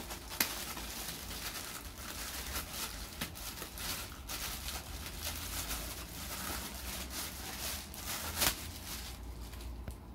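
Clear plastic bag crinkling and rustling as it is worked off a microscope head by hand, with a sharp crackle just after the start and a louder one about eight and a half seconds in.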